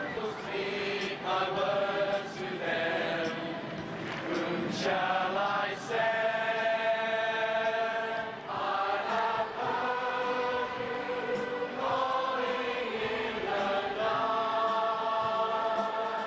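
A large group of voices singing together in a chant-like song, holding each note for a second or two before moving to the next.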